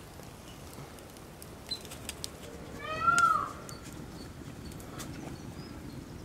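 A single short animal call about three seconds in, lasting about half a second and rising then falling in pitch, over the faint crackle of a charcoal and wood fire.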